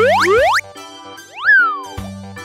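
Cartoon sound effects over upbeat children's background music: two quick rising pitch swoops right at the start, then a pitch glide that rises and falls back about a second and a half in, as parts move into place.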